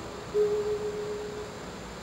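Classical guitar solo at a pause in the music: a single soft note is plucked about a third of a second in, rings briefly and fades, then a short silence follows.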